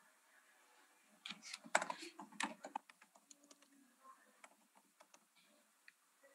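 Faint typing on a computer keyboard: a quick run of keystrokes about a second in, then scattered single key clicks.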